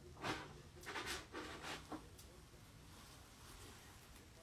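Faint, indistinct speech in the background during the first two seconds, then quiet room tone.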